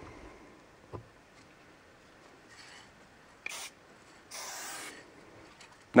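Low-pressure Sigma spray paint can sprayed through a beige dot cap, hissing in two bursts: a short one about three and a half seconds in, then a longer one of under a second.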